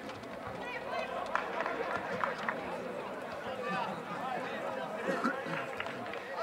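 Indistinct voices of spectators and players calling out around an outdoor football pitch, with a few short sharp knocks in between.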